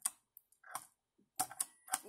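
A fingerboard clacking on a wooden tabletop as its tail is popped for an ollie and the board lands: a sharp click at the start and a quick cluster of clicks about a second and a half in.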